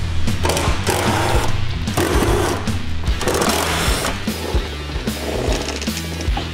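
Background music with a steady beat, over which a cordless impact driver runs in about four short bursts of roughly a second each on the rear seat's mounting bolts.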